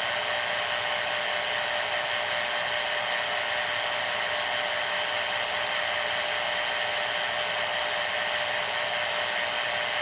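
Handheld 40-channel CB transceiver's speaker giving a steady hiss of radio static, with a faint steady tone running through it and no voice on the channel.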